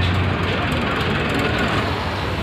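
Low rumble of a vehicle engine running close by over steady outdoor noise. The rumble is strongest at the start and eases slightly within the first half-second.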